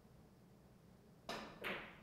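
Quiet room tone, then a little over a second in a cue strikes a carom billiard ball with a sharp click, followed by another click about a third of a second later.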